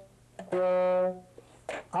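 Saxophone playing one short held note with a crisp, tongued attack, lasting about half a second, followed by a man starting to speak near the end.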